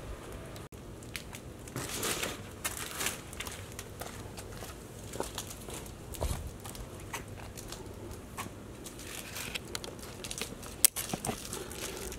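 Plastic protective wrap being peeled off a stainless steel worktop and crumpled: an irregular crinkling and crackling, with one sharp click near the end.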